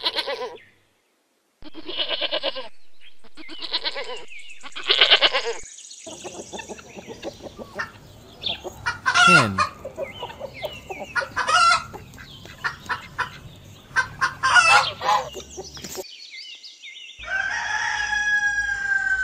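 A domestic goat bleats three times, then a flock of hens clucks and cackles with many short, sharp calls.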